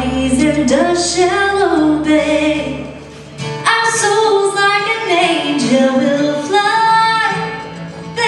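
A woman singing a slow traditional hymn melody live, her voice carrying the tune almost alone. A low held bass note fades out over the first few seconds, and there is a brief quieter gap about three seconds in before the voice comes back strongly.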